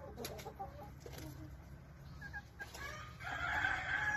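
Chickens clucking faintly in short calls, then a louder, drawn-out call near the end.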